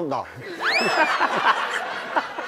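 Group laughter, the kind dubbed over a TV comedy sketch, building up after a punchline, with one whistle about half a second in that shoots up in pitch and then slides slowly down.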